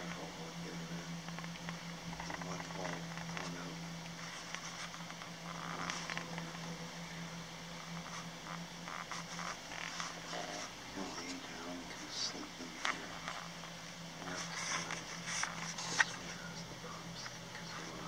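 A steady low hum under faint, muffled voices, with scattered clicks and one sharp knock about sixteen seconds in.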